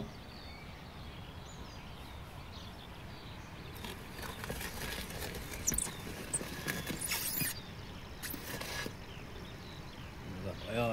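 A knock, then a large round metal baking tray scraped and dragged across the brick floor of a wood-fired oven in several short pulls.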